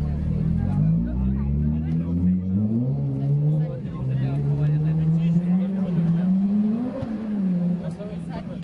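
A motor vehicle engine running and revving slowly, its pitch climbing over several seconds, peaking near the end and then falling away.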